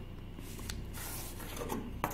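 Faint scratching of a ballpoint pen drawn along a clear plastic ruler on paper, with the ruler shifted across the sheet, giving a couple of light ticks.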